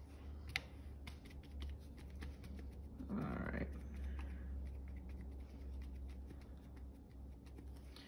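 Crumpled paper towel dabbed and pressed onto wet watercolor paper, lifting paint out of a blue sky wash to form clouds: soft, irregular little taps and crinkles, with a sharper click about half a second in, over a steady low hum.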